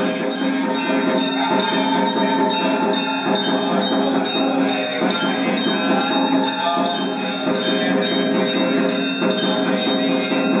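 Indian devotional music with a sustained drone, a quick, even beat of jingling bell-like percussion strikes about three times a second, and a faint wavering melody line.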